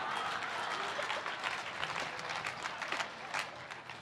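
Audience applauding, a dense patter of many hands clapping that dies down near the end.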